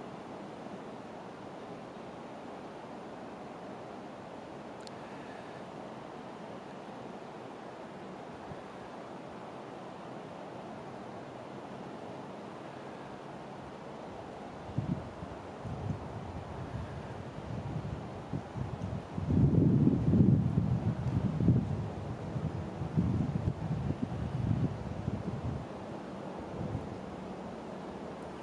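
Wind outdoors: a steady low hiss, then from about halfway in, irregular gusts buffeting the microphone, loudest about three-quarters of the way through.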